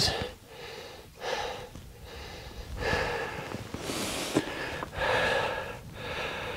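A man breathing hard close to the microphone, one heavy breath about every second, winded from climbing over boulders. A single light click sounds about two-thirds of the way through.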